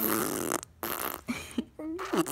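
A baby blowing raspberries: two long wet lip buzzes, then a short vocal glide near the end.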